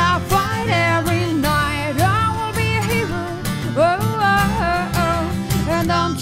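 Acoustic performance of a pop-rock song: a woman singing a melodic line, with held and gliding notes, over acoustic guitar accompaniment.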